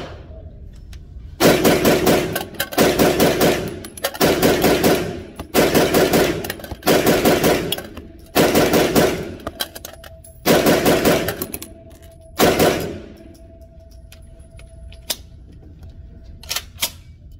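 Kalashnikov KP-9 9mm short-barrelled rifle fired in quick strings of shots, about eight strings in all, each lasting about a second, with short pauses between. The shots echo off the hard walls of an indoor range.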